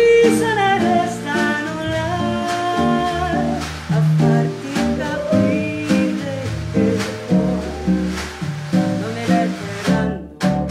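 Live bossa nova band: a woman sings over nylon-string acoustic guitar, bass, piano and snare drum keeping a steady beat.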